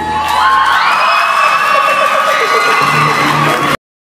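Audience cheering and whooping, with high screams gliding upward, as the hip hop backing track's bass drops out and briefly returns. The audio cuts off abruptly shortly before the end.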